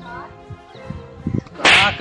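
A sudden loud whip-like crack with a cry, near the end, after a quieter stretch.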